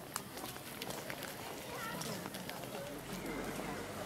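People's voices talking outdoors, with scattered footsteps on a paved path.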